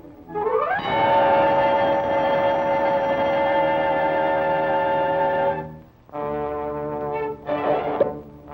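Cartoon soundtrack brass. A quick upward swoop leads into a loud chord held for about five seconds, then after a short break comes a second, shorter held note and a brief blast near the end.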